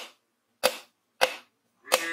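A wooden stick striking the back of a machete blade, hammering it down into a green coconut: three sharp knocks in an even rhythm, about 0.6 s apart.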